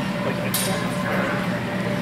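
Background noise of a large indoor sports hall: a steady low hum under faint murmuring voices, with a brief high-pitched hiss-like sound about half a second in.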